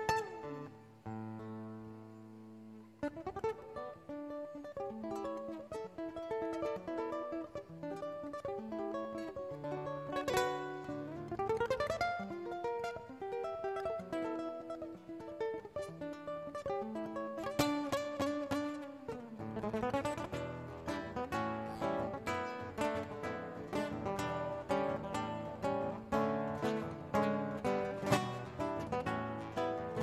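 Solo nylon-string classical guitar played fingerstyle: slow ringing notes at first, then quick rising runs about ten seconds in and denser, faster picking over the last third.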